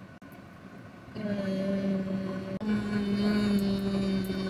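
A woman humming with closed lips: two long, steady notes, the second a touch higher, starting about a second in.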